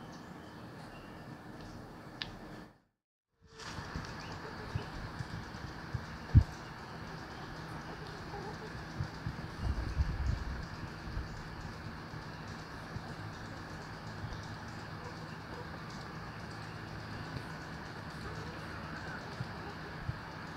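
Yard ambience where a small flock of brown hens scratch and peck through a pile of hay: faint bird sounds over a steady background hiss. There are a few short low thumps on the microphone, the sharpest about six seconds in.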